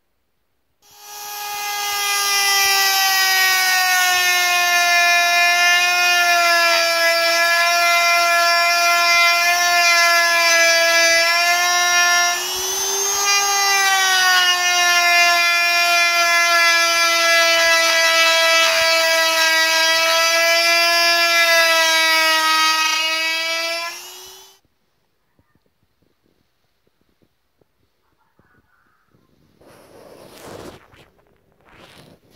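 Handheld rotary tool with a carving bit cutting into a wooden walking stick: a steady high motor whine that starts about a second in, wavers briefly about halfway through and stops a few seconds before the end.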